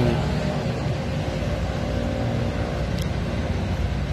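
Steady low rumble and hum of a running engine, with a single brief click about three seconds in.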